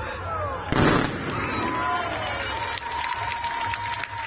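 Fireworks going off: one loud bang about a second in, then scattered sharp crackles, with crowd voices underneath.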